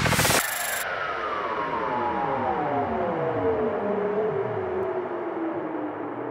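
Psytrance track going into a breakdown: the kick and beat stop about half a second in. What is left is a sustained synth chord whose pitch slides slowly and steadily downward.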